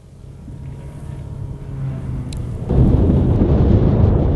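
Wind buffeting the camera microphone outdoors, a low rumble that swells gradually and jumps louder about two-thirds of the way in, over a faint steady low hum.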